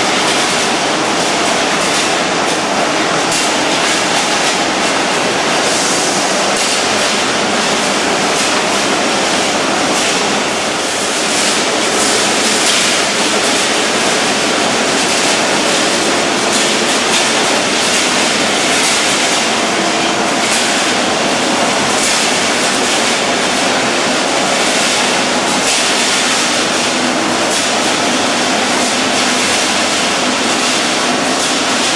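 Steady, loud din of running wire-processing machinery, a dense rapid clatter with a continuous mechanical rush beneath it, as wire is fed off a coil into the machines.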